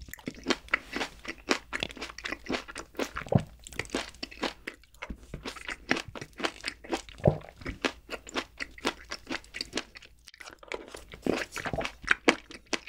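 Close-miked chewing of mixed-berry chocolate cake: dense, rapid crunching and wet mouth clicks, several a second, with a brief lull near the end.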